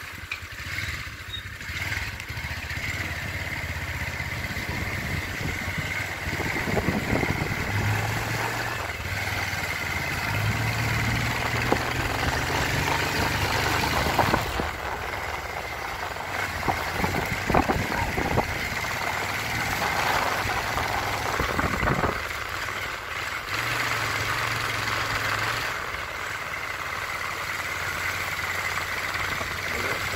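A vehicle engine running steadily, its low hum shifting in pitch a few times, under a constant high drone.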